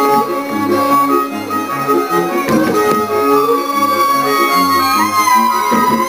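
Live folk band of the Żywiec highlands playing a dance tune: fiddles carry the melody in long held notes over a steady, regularly repeating bass-and-chord accompaniment.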